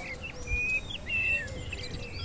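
Small birds chirping, with short high whistled notes scattered through, over a faint low rumble of outdoor background noise.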